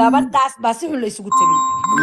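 A person's voice in the first half, then steady electronic chime tones that hold and switch pitch abruptly, with the voice continuing beneath them.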